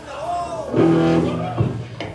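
A single electric guitar chord rings out through the amplifier for about a second and then is cut off.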